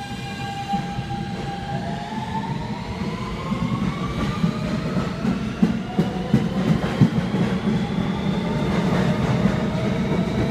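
New York City Subway R160B Siemens train accelerating along an underground platform. The propulsion whine rises steadily in pitch and grows louder over the rumble of steel wheels on rail, with a few sharp clicks from the wheels over rail joints midway through.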